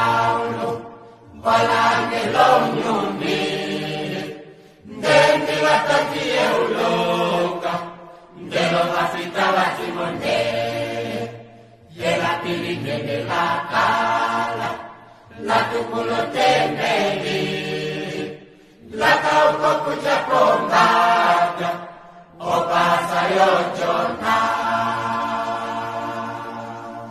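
A choir sings an Oshiwambo gospel song in repeated phrases of about three and a half seconds, each followed by a brief pause for breath.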